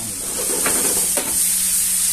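Chicken and vegetables sizzling in a frying pan over a gas burner, growing louder about half a second in as the pan is shaken and the food tossed.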